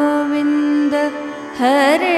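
Devotional mantra singing: a woman's voice holds a long sung note over a steady harmonium accompaniment. Near the end it grows louder and breaks into ornamented notes with wide vibrato.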